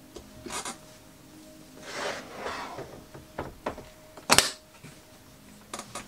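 Hard objects being shifted and handled on a workbench: scattered rubbing and scraping, with one sharp knock a little over four seconds in.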